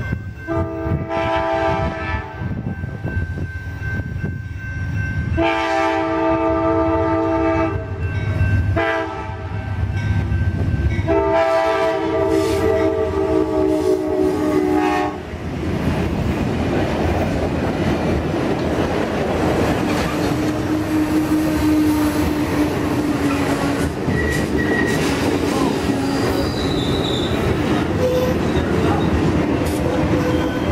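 Amtrak GE P42DC diesel locomotive's air horn sounding three blasts as the train approaches the station, the last and longest ending about 15 seconds in. The train then rolls past close by with loud, steady wheel-and-rail noise and a faint wheel squeal as it slows for its stop.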